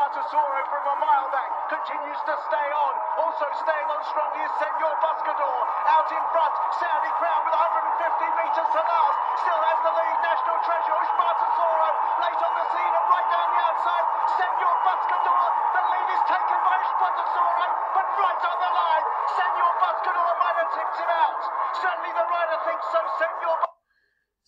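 Television horse-race commentary playing from a video through a small speaker: one continuous stream of fast, busy sound with no bass, thin and tinny, with no words clear enough to make out. It cuts off suddenly near the end when playback is paused.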